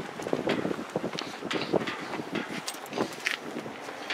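Footsteps on pavement with handheld-camera handling noise: irregular light clicks and scuffs over a faint steady outdoor hiss.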